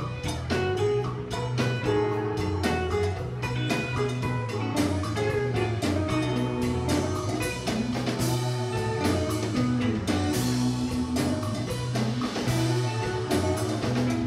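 Live band playing an instrumental blues passage: electric guitars and bass over a drum kit and a djembe, without vocals.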